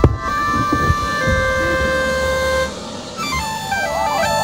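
Electronic music: synthesized tones stepping up and down in pitch, with one tone held steady for about a second and a half in the middle. There is a thump right at the start, and the music dips briefly near the end.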